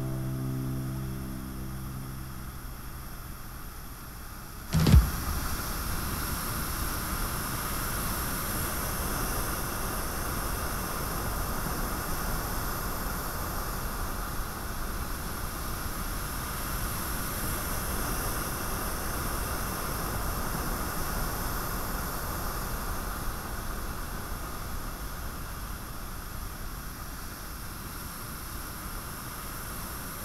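Guitar music dies away, then a sudden thump about five seconds in, followed by a steady rushing noise of ocean surf and wind.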